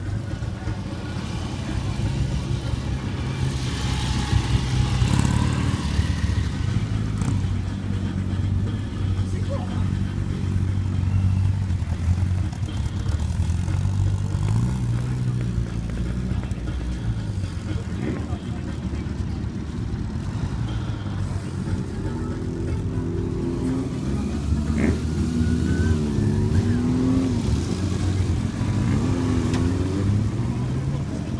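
Several motorcycle engines running as bikes pull away one after another, with a rising rev partway through and engines revving up and down near the end.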